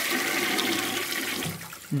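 Toilet flush sound effect: a rushing of water that fades away near the end.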